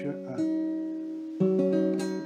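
Acoustic guitar played in chords, the notes left ringing; a new chord sounds about half a second in and another, louder one about a second and a half in.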